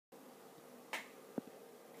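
Vinyl record surface noise from a turntable before the music starts: a faint steady hiss and low hum, with a click just before a second in and a sharper pop at about a second and a half.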